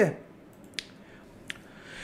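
Two sharp computer mouse clicks, a little under a second apart, over quiet room tone.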